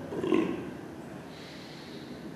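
A person's short, voiced exhale, a groaning sigh of about half a second, during deep relaxation breathing.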